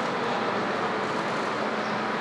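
Steady, even din of a crowded railway station concourse, with no single sound standing out.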